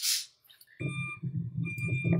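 Low, steady engine rumble of a small school bus, heard from a phone recording played back on a computer, starting about a second in after a brief silence, with a few faint high tones over it.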